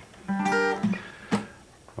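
Acoustic guitar strummed once, the chord ringing for about half a second, then one short strum about a second later.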